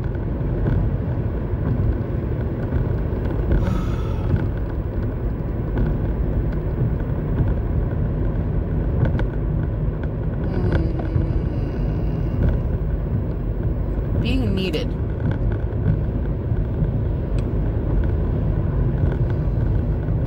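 Steady low rumble of road and engine noise inside a moving car's cabin, with a few brief hissing sounds about four, eleven and fifteen seconds in.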